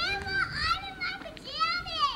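A baby's high-pitched vocalizing without words: two drawn-out sounds, the second arching up and then down in pitch.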